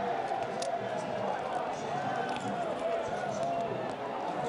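Several indistinct voices talking and calling out at once over a steady crowd background, with no single clear speaker.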